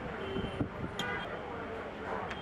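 Street background noise of passing traffic and indistinct voices, with a couple of light clicks about a second in.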